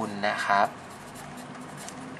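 Marker pen writing on paper: a run of faint, short scratchy strokes as a word is written out.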